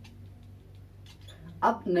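Marker pen writing on a whiteboard: faint squeaks and scratches of the tip over a low steady hum, with a man's voice starting near the end.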